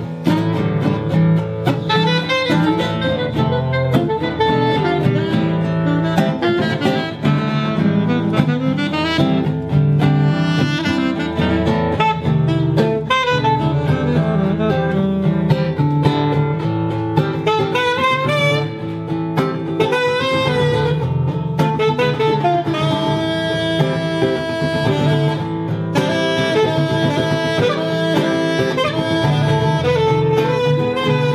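Instrumental break of a folk song: a saxophone plays a melodic solo with gliding, bending phrases over steadily strummed acoustic guitar.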